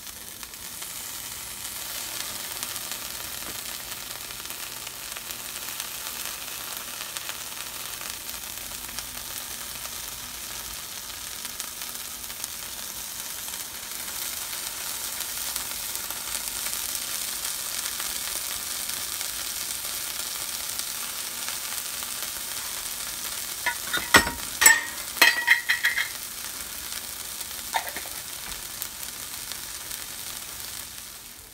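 Sliced red onion, diced red bell pepper and hot peppers sizzling steadily in butter in a nonstick frying pan. About three-quarters of the way through, a short run of loud, sharp crackles and clicks stands out.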